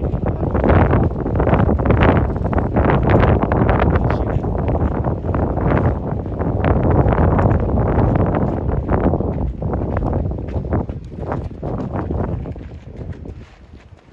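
Wind buffeting the microphone: a loud low rumble that swells and dips in gusts, dying down near the end.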